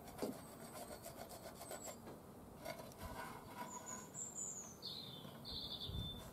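Faint scratching and rubbing strokes of a pencil marking on metal, and of a rusty steel mower blade being handled and turned on an angle grinder's spindle. Small birds chirp several times in the second half.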